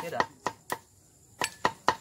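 Metal ladle knocking against a porcelain bowl in quick, even taps, about four or five a second with a short pause midway, as raw duck blood is stirred and scooped.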